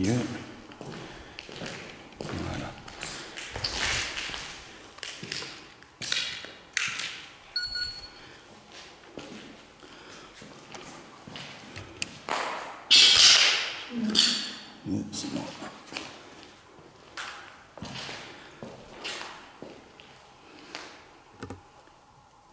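Footsteps crunching over debris on a concrete floor, with handling noise as a small electronic proximity-alarm device is set down. A short, high electronic beep sounds about seven and a half seconds in.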